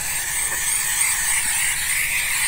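Bissell SteamShot handheld steam cleaner jetting steam from its nozzle while the trigger lever is held down: a steady high hiss.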